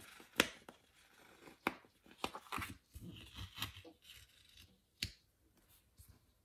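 Paper handling: a planner page rustles and is pressed flat by hand, with about five sharp clicks and taps spread through.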